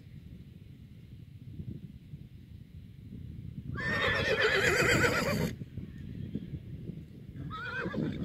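A horse whinnying close by: one loud call about four seconds in, lasting about a second and a half with a quavering pitch, then a second, shorter whinny near the end.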